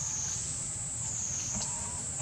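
Forest insects droning steadily in a high-pitched chorus that wavers slowly up and down in pitch, about once a second.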